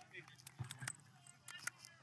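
A few light clicks and clinks of small hard objects being handled on a table, under faint background voices.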